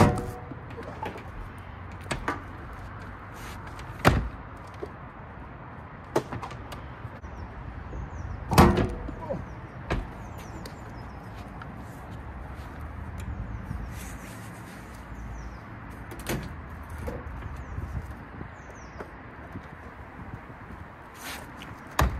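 Scattered knocks and clunks as a wet-and-dry vacuum and its hose are handled on a narrowboat's deck, the loudest about eight and a half seconds in. Birds chirp faintly in the background.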